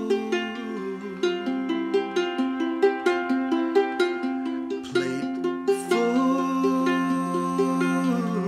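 Ukulele played in a steady run of plucked notes over a bowed cello holding long low notes that change every second or two.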